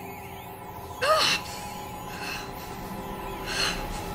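A woman's short pained gasp about a second in, and a second, breathier gasp near the end, over a steady music score.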